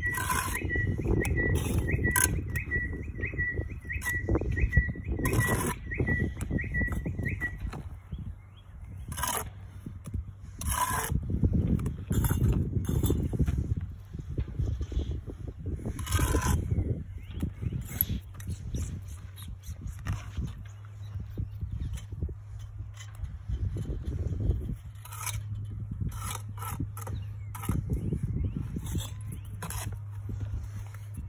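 Bricklaying with a small trowel: irregular sharp clicks, knocks and scrapes of steel on brick and mortar as bricks are set on the wall and tapped down. A thin high chirp repeats steadily through roughly the first quarter, over a low steady rumble.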